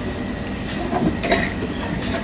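Steady rumbling background noise of a restaurant dining room, with a few faint clicks about a second in.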